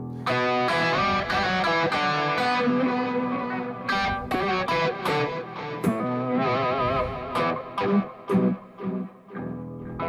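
Godin guitar playing an E minor pentatonic lead line through a heavy delay and an octaver set an octave down, with a held note given a wavering vibrato a little past the middle.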